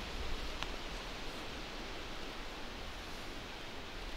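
Steady outdoor background hiss with a low rumble underneath and one faint click about half a second in.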